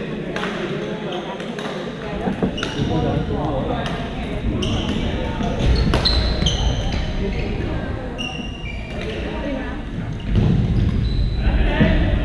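Badminton being played in a large gym hall: sharp racket hits on a shuttlecock every second or two, and short squeaks of court shoes on the floor. Voices chatter from the courts all around.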